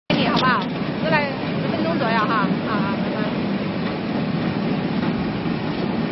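LXTP 3000 potato washing and peeling machine running steadily, a continuous mechanical noise from its geared motor and peeling drum. Voices talk over it during the first three seconds.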